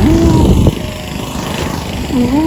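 A small petrol engine running steadily, a low pulsing rumble throughout. For the first moment a voice is heard over it.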